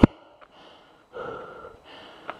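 A person's heavy breathing: one long breath about a second in and another starting near the end. She is out of breath from walking uphill with a heavy load.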